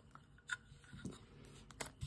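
Faint clicks and taps of a clear plastic cube display case being handled and set down, with one sharper click about a quarter of the way in and another near the end.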